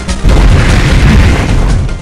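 Explosion sound effect in an animated film: a loud, deep rumbling boom that starts a moment in and fades out at the end, with music under it.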